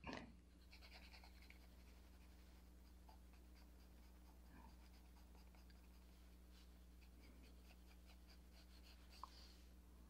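Faint scratching of a 6B graphite pencil shading lightly on paper in quick repeated strokes.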